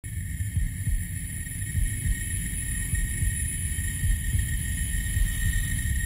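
Low, steady rumbling drone with thin, steady high tones above it, coming in suddenly at the start.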